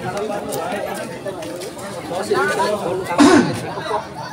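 Chatter of several people talking at once, with one louder call about three seconds in that drops in pitch.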